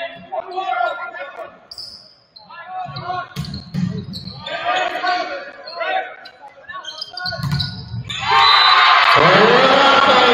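Volleyball in play in a large, echoing gym: several sharp smacks of the ball being served, passed and hit, with voices calling. About eight seconds in, loud sustained music starts over the hall's sound system as the rally ends.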